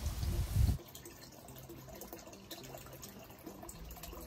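Faint trickling and dripping of water in a small garden pond. A brief low rumble at the start cuts off abruptly.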